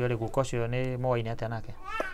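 A low-pitched voice talking, with one long drawn-out syllable through the middle.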